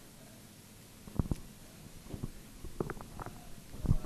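A lull in a lecture room: about a second of quiet, then a scattering of faint low thumps and knocks.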